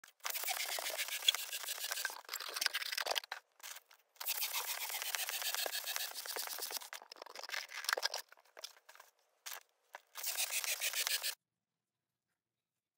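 Handheld balloon pump being worked to inflate a latex balloon: a rushing hiss of air in several long stretches with short gaps between. The sound cuts off suddenly near the end.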